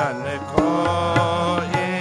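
Sikh kirtan: a male voice sings a devotional shabad, with held harmonium chords and tabla strokes beneath it.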